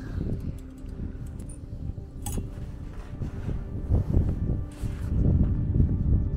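Wind buffeting the camera microphone: an uneven low rumble that swells about four seconds in and again near the end, with a couple of faint clicks.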